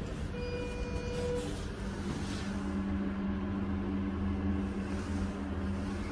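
Elevator car button pressed, answered by a steady beep lasting about a second. About two seconds in, a steady low hum from the hydraulic elevator starts and runs on over a low rumble.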